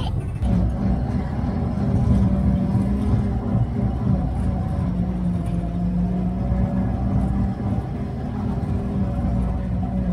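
Studebaker M29 Weasel's six-cylinder engine running steadily as the tracked vehicle drives along, a continuous low drone with a slight rise in level about two seconds in.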